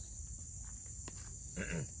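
Steady, high-pitched chirring of crickets, with a single click about a second in and a short human laugh near the end.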